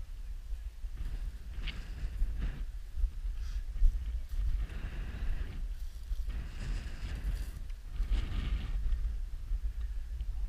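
Footsteps crunching through snow-patched crop stubble in irregular short bursts, over a steady low rumble of wind on the microphone.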